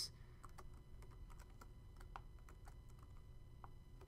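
Faint keystrokes on a computer keyboard: about a dozen light, irregularly spaced clicks as a short phrase is typed.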